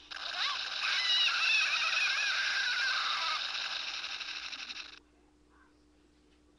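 A high, wavering, voice-like sound over a steady loud hiss, cutting off abruptly about five seconds in.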